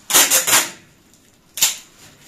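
Clear plastic film crinkling in the hands as it is pressed around a LEGO model: a crackling rustle for about the first half second, then one short sharp crackle about a second and a half in.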